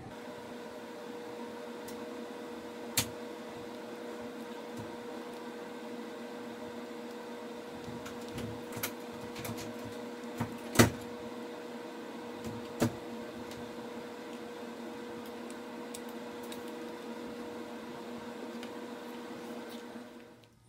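Plastic Lego pieces clicking and tapping on a tabletop as a model is handled, a few sharp clicks spread through, the loudest about eleven seconds in, over a steady background hum.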